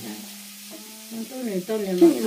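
A steady hiss with people's voices talking over it; one voice holds a single tone through the first second.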